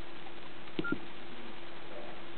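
Nokia E65 keypad button pressed to confirm a menu choice: two short clicks a fraction of a second apart with a brief key beep between them, over a steady faint hum and hiss.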